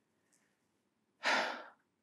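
A man sighing once: a short breathy exhale of about half a second, a little over a second in.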